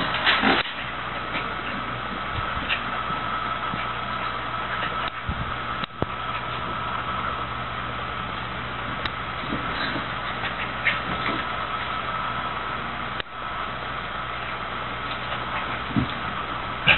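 Electric pedestal fan running: a steady hum and hiss with a constant high whine over it. A short sharp sound comes near the start, and there are a few faint scuffs.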